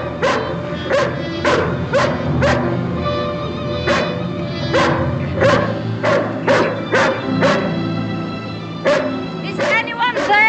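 A dog barking repeatedly, about one or two barks a second with a couple of short pauses, over a dramatic orchestral score.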